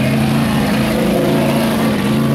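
Rock bouncer buggy's engine running under load as it climbs a rock ledge, its note holding steady and loud.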